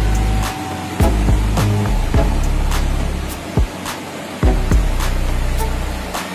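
Background music with a heavy bass beat: deep bass notes that drop in pitch, with sharp percussion hits every half second to a second.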